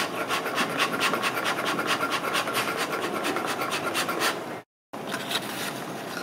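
Small homemade lung-powered reciprocating air engine running: its piston, crank and wooden flywheels make a rapid, even clicking rattle, several clicks a second. It cuts off abruptly about three-quarters of the way through, and fainter handling noise follows.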